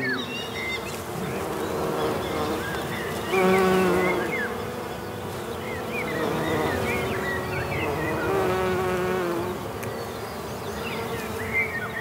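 Bees buzzing close by, the buzz swelling as they pass, most strongly about four seconds in and again from about six to nine seconds, with faint high chirps over it.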